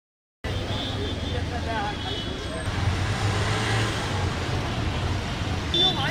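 Street traffic noise with a steady low engine hum and faint voices, starting about half a second in after a brief silence.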